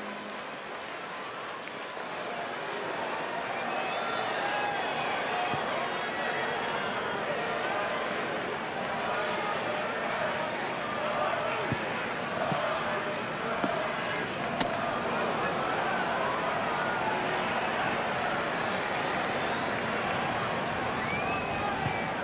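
Ballpark crowd murmur: many fans' voices chattering and calling out, rising a little over the first few seconds and then holding steady, with a sharp click about two-thirds of the way through.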